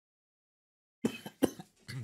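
A man coughing: two sharp coughs about a second in, then a shorter third one near the end.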